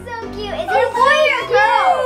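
Several children's voices exclaiming excitedly, with background music underneath.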